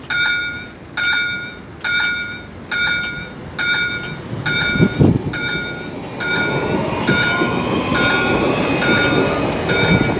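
Siemens ULF low-floor tram pulling away from a stop: from about six seconds in, a whine rising in pitch builds over a rumble of wheels on rail. A three-tone electronic beep repeats about every 0.8 s throughout, and there is a low thump about five seconds in.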